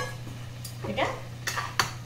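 Steel spatula knocking and scraping against a kadai as chicken pieces in a yogurt marinade are turned, giving a few sharp metallic clicks, the loudest near the end.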